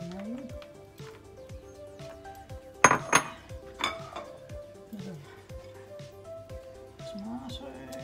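Crockery clinking as a china plate is handled: a sharp ringing clink about three seconds in and a lighter one just under a second later. Background music plays throughout.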